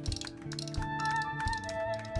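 Live highlife band playing an instrumental passage: drum kit strikes and quick light high ticks over a steady bass line, with held melody notes that come in about a second in.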